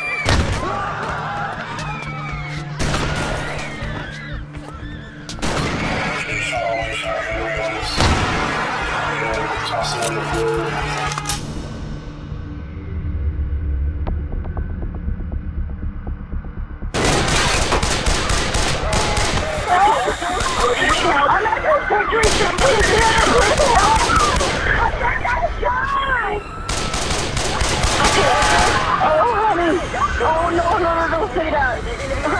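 Rapid gunfire with people screaming, giving way about a third of the way in to a quieter stretch of low music, then a louder, denser chaos of shots and screaming returns a little past the middle.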